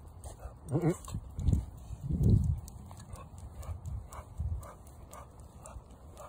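A leashed dog makes two short, low vocal sounds, about one and a half and two and a half seconds in; it is not barking. Faint, fairly even ticks follow.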